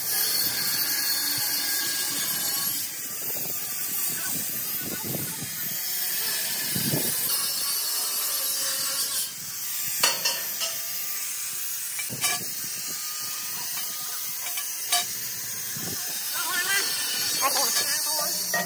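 Electric arc welding on a steel-tube bus body frame: a steady sizzling hiss, with a few sharp knocks about ten, twelve and fifteen seconds in.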